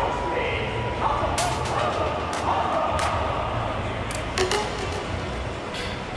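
Echoing ambience of a large velodrome hall: a steady background hum and distant voices, broken by several sharp clicks.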